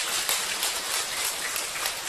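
Audience applauding, a steady spell of clapping.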